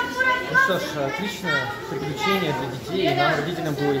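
Voices: a man talking, with children's voices and chatter around him in a large hall.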